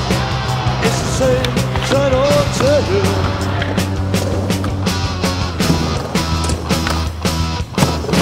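Skateboard wheels rolling on concrete and boards clacking as tricks are popped and landed, mixed with rock music that has a singing voice.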